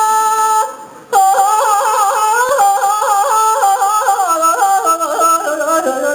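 A man singing a Tibetan folk song solo: a long held high note, a brief break about a second in, then a melody full of quick yodel-like flips in pitch that slowly falls lower.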